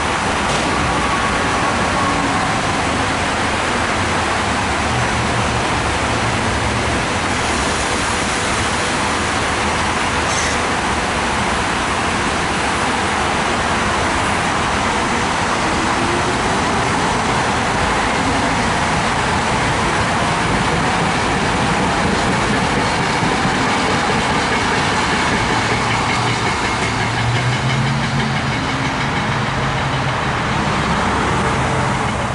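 SEPTA Silverliner IV electric multiple-unit train rolling past close by, a steady wash of wheel-on-rail and running noise. A low hum grows louder near the end.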